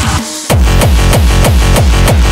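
Hardcore/frenchcore electronic track: the dense, distorted section thins out briefly, then about half a second in a driving beat of heavily distorted kick drums comes in, about three kicks a second, each with a falling pitch tail.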